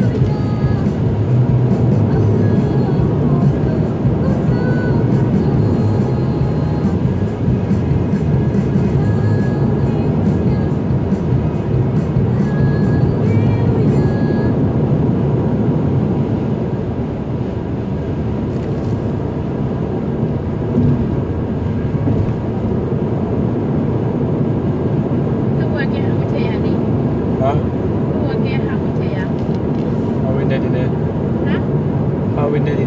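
Steady road and tyre noise inside a car cabin at highway speed.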